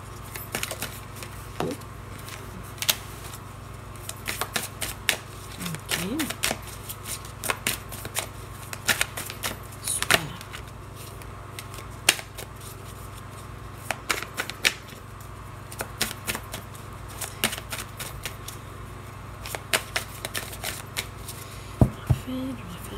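A deck of tarot cards being shuffled and cut by hand: a long run of irregular, crisp card clicks and snaps.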